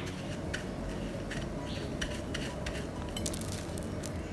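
Hands pressing panko breadcrumbs onto raw chicken-and-cheese cubes: faint crumbly rustling with a few light scattered clicks.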